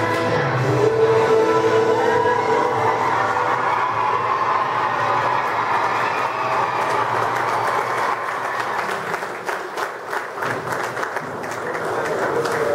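A children's song with long held notes, fading out about seven seconds in, followed by audience clapping and applause.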